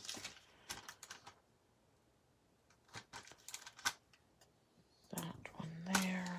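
Paper handling: clusters of short, sharp clicks and taps as a planner sticker is peeled from its sheet and pressed onto the page. A quiet gap falls between the two clusters.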